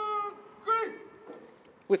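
A parade-ground word of command shouted by a single male voice: one long drawn-out call, then a shorter second call that drops in pitch just under a second in.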